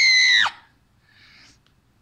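A child's high-pitched scream of "Ah!", held at a steady pitch and cutting off about half a second in.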